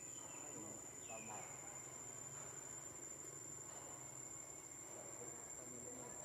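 Faint insect chorus in the forest: a steady, high-pitched trill held on one unbroken note.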